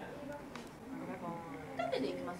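Faint, high-pitched voice of a young girl speaking briefly, with a short falling-pitch utterance in the middle.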